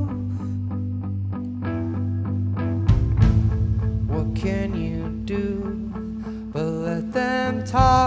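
Live indie rock band in a studio: the band drops back to picked electric guitar notes, then the bass and drums come back in about three seconds in, with a loud full-band hit near the end.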